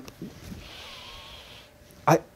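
A man sniffing at a disposable face mask held to his nose to check it for odour: one long, soft inhale lasting about a second.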